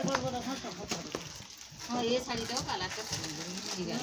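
A bird cooing softly under quiet background voices.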